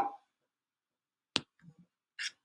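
A single sharp click on the computer about one and a half seconds in, followed by two faint soft taps, with a brief short sound at the very start.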